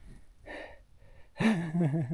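A man's breathy gasp or exhale about half a second in, then he starts laughing about a second and a half in.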